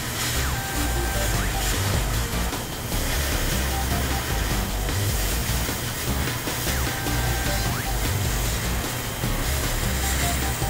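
Background music over a steady rushing hiss from an oxy-fuel cutting torch cutting through steel plate.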